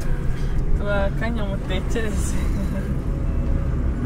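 Steady low rumble of a car's engine and road noise inside the cabin while driving, with a person's voice briefly about a second in.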